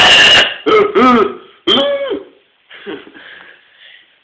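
Domestic cat giving four harsh, complaining meows in quick succession while being held and play-wrestled. The first is the loudest and roughest. Fainter sounds follow near the end.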